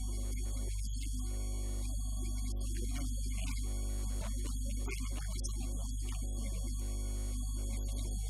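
Steady, low electrical mains hum on the recording, unbroken and louder than anything else, with a man's faint speaking voice beneath it.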